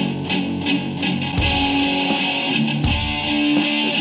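Rock music in an instrumental break: electric guitar playing sustained chords and notes over a steady beat of about four hits a second.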